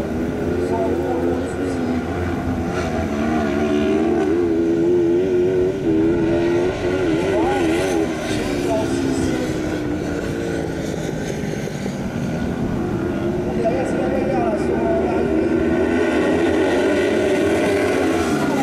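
Engines of several 500 cc kart cross buggies racing, revving up and down with wavering pitch, several at once. They grow louder again near the end as the karts pass close by.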